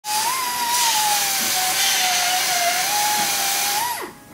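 Pneumatic grinder grinding on a car's metal body: a steady, loud high whine over the hiss of grinding. The pitch wavers a little as the wheel is pressed to the work, and it cuts off suddenly at the end.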